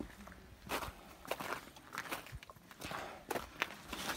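Footsteps on snow-patched, gritty ground: a run of irregular steps, about two to three a second.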